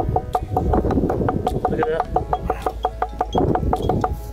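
Steel chisel tapped rapidly against fossil-bearing limestone, about six even taps a second, each with a short ringing note, chipping away rock to uncover a buried fossil fish. The tapping stops near the end.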